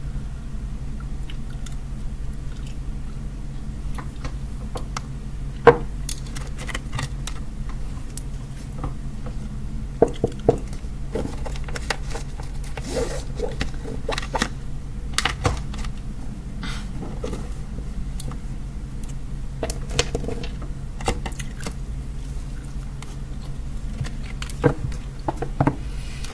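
Small objects being picked up and set down on a tabletop: scattered clicks, taps, light clinks and scrapes, with a few sharper knocks about six and ten seconds in, over a steady low hum.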